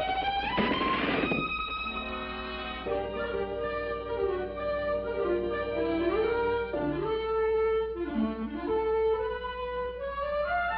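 Cartoon orchestral score led by violin, its notes sliding up and down in pitch, with a brief noisy burst about a second in.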